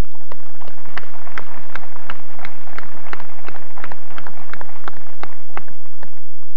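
Audience applauding outdoors: a scattered run of separate hand claps that dies away near the end.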